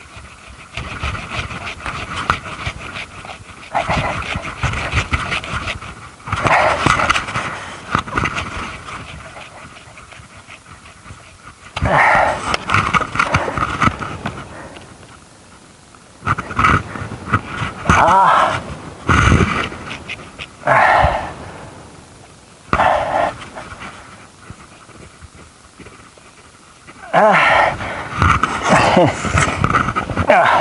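Hand saw cutting into a pine trunk in runs of strokes, each run lasting a second or two, with pauses in between.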